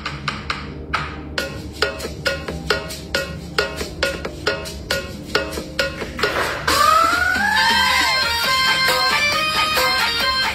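Background music: a steady clicking percussive beat of about four strokes a second with short notes. About two-thirds of the way through, a swelling sweep that rises and falls in pitch opens into a fuller instrumental section.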